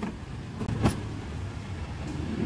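Roti dough slapped onto a steel cart counter: one slap at the start and a louder one just under a second in. Underneath is the steady low rumble of street traffic.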